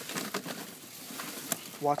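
Plastic trash bags rustling and crinkling as hands rummage through them, with a brief sharp click about one and a half seconds in.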